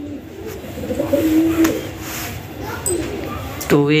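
A bird cooing: one low, drawn-out coo of about a second and a half, then a shorter one a little before the end.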